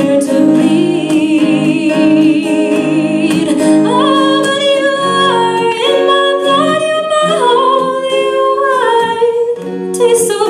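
A woman sings a folk song to her own acoustic guitar accompaniment. She holds a long note with vibrato for the first few seconds, then moves into a melody that steps from note to note.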